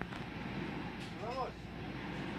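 Steady background hum of a shop interior, with a brief faint voice about a second and a half in.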